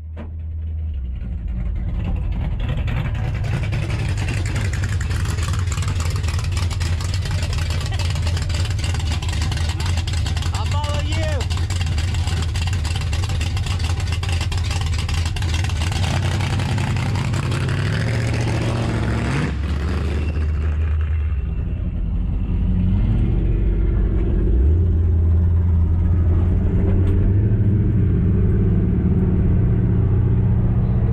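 Old trucks' engines: a low idling rumble with a steady hiss over it, then, after a sudden break, an engine running under way, its pitch rising and falling as it pulls away and shifts.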